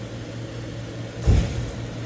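A steady low hum, with one short, loud thump about a second and a half in.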